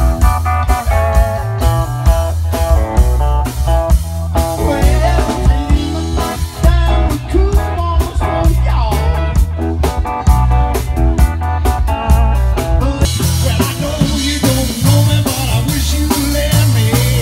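A live band playing an upbeat song through a PA: electric bass and drum kit with guitar. The sound turns brighter and noisier about thirteen seconds in.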